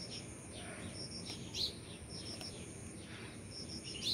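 Birds calling in the background: a run of three short high pips repeating about every second and a quarter, with one louder sweeping chirp about one and a half seconds in.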